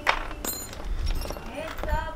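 A woman's voice, faint and pitched like singing, starting again near the end, over light clicks of small metal parts being handled.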